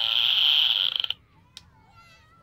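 Handheld canned air horn giving one loud, harsh blast that cuts off sharply about a second in.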